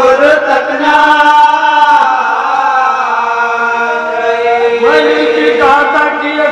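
Unaccompanied men's voices chanting a marsiya, an Urdu elegy for the martyrs of Karbala, a lead reciter with others joining in on long held notes. The melody glides up to a higher note about five seconds in.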